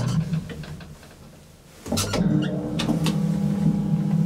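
Old Otis traction elevator running: its steady low hum dies away over about a second and a half, then a sharp click about two seconds in and the hum starts up again, followed by a few lighter clicks.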